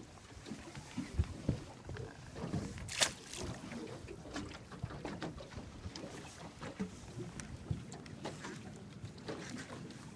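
Scattered low knocks and handling sounds aboard a small boat, with one sharp crack about three seconds in.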